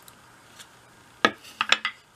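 A sharp wooden knock about a second in, followed by a few lighter clacks, as a pine dowel and a wooden holding cradle are set down on a wooden workbench.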